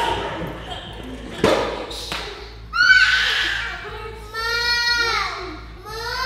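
A thump about one and a half seconds in, then two long, high-pitched wailing cries that waver up and down, the sort of wordless yells of a play-fight on the floor.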